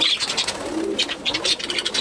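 A flock of budgerigars chattering with rapid high chirps and ticks as they feed, with pigeons cooing low underneath.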